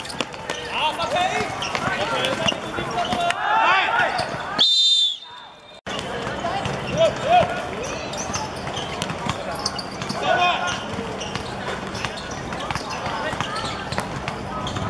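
Footballers shouting to one another during play, with sharp thuds of the ball being kicked. About five seconds in a brief high whistle-like tone sounds, and the audio drops out for about a second.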